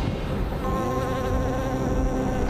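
Swarm of bees buzzing: a steady hum of several held tones, with a higher tone joining a little over half a second in.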